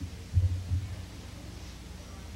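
Two dull low thumps in quick succession, less than a second in, over a faint steady hum.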